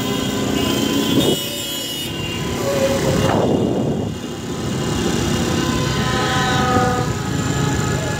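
Several car horns honking in long held blasts over the running noise of vehicle engines in street traffic, with a falling whoosh of a vehicle passing close about three seconds in.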